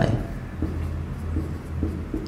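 Marker pen writing on a whiteboard: a few faint, short scratching strokes, over a low steady hum.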